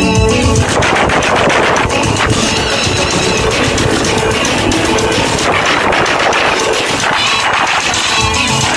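Live music on an electronic arranger keyboard: held chords give way, about half a second in, to a fast, dense stream of rapid repeated notes and beats.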